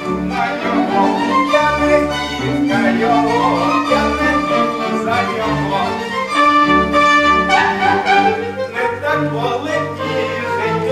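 Chamber orchestra playing an instrumental passage, violins leading over repeated low bass notes.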